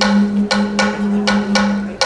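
A conch shell blown in one long, steady low note, broken off at the end, with about five sharp wooden-sounding knocks struck over it roughly every half second.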